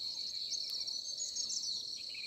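Insects trilling steadily on one high note, with bird chirps scattered through the middle.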